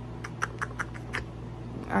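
Phone handling noise: a quick run of about six small clicks within about a second as the phone is moved, over a low steady hum.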